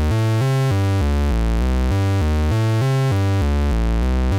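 Eurorack modular synthesizer playing a repeating run of short bass notes, about four a second: a square-wave oscillator played through the DIY Kra Pao resonant low-pass gate.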